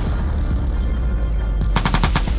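Background music with a deep bass, then near the end a rapid burst of about half a dozen shots from a vehicle-mounted 50-calibre heavy machine gun.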